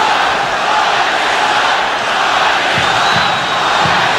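Basketball arena crowd noise: many voices blend into a steady din, with a few louder single voices standing out near the end.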